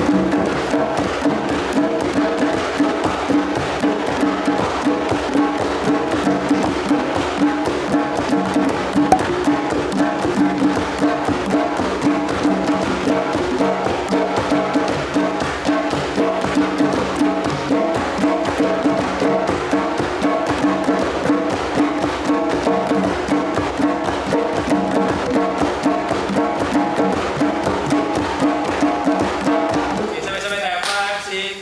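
A group of djembe hand drums played together in a steady, continuous rhythm, many hand strikes layered at once throughout.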